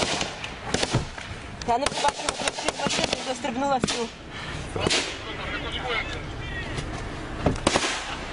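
Gunfire: sharp cracks, some in quick runs of several shots a second, heard from inside a car, with men's voices shouting over it.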